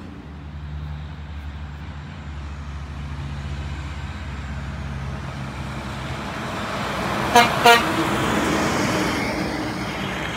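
A heavy truck's low engine hum, then two quick horn toots about seven seconds in, followed by louder road noise as the vehicle goes by.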